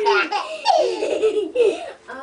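A baby laughing in several short, high-pitched bursts.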